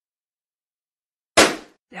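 Cartoon sound effect of a sheet of paper being smashed: one sudden, loud hit-like noise about a second and a half in that dies away within half a second.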